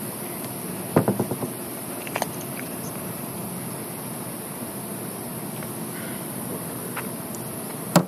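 Steady hiss of an interview room's background noise on the recording, with a brief clatter of knocks about a second in and a smaller click shortly after.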